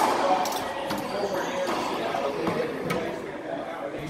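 Racquetball rally: several sharp hits at uneven intervals as the ball is struck by racquets and rebounds off the court walls, over background chatter.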